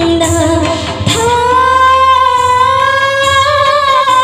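Female singer singing over instrumental backing. The beat fades about a second in, and she then holds one long note with a slight vibrato.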